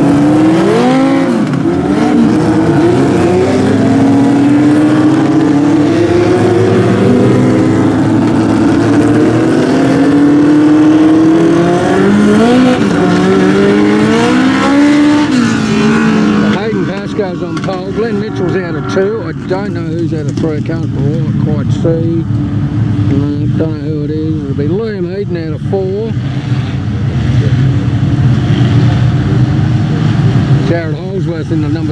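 A pack of small dirt-track race cars running around the speedway on the rolling laps before a race start, their engines revving and rising and falling in pitch as they pass, loud for the first half. Just past halfway the engines become quieter and steadier, with a voice over them for a while.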